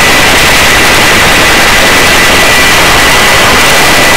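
Helicopter hovering, heard from on board: loud, steady rotor and turbine noise with a thin, steady high whine running through it.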